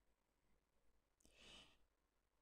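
Near silence, with one faint, short intake of breath from a woman about one and a half seconds in.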